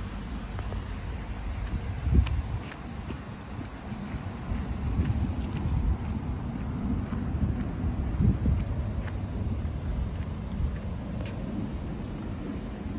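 Wind buffeting the microphone in a gusty, uneven low rumble, with a sharp low thump about two seconds in.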